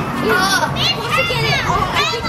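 Several children's high-pitched voices calling out and chattering over one another, with more children playing in the background.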